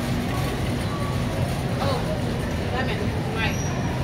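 Supermarket background noise: a steady low rumble, with faint voices of other shoppers.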